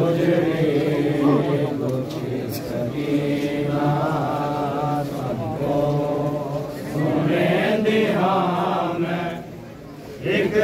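Men's voices chanting a Punjabi noha, a mourning lament for Imam Hussain, in long held, wavering notes. The chant dips briefly just before the end.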